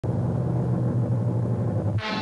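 Loud, steady low rumbling drone of a TV show's opening sound effect. It cuts off abruptly at the end as the theme music begins.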